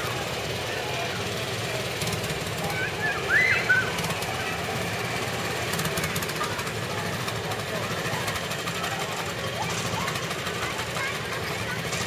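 Small engine of a child-sized antique-style ride car running steadily with a low rumble as the car drives past, with background voices. A brief high call stands out about three and a half seconds in.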